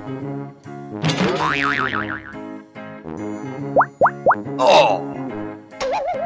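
Cheerful children's background music with cartoon sound effects laid over it: a wobbling boing about a second in, three quick rising bloops around four seconds, and a bright burst shortly after.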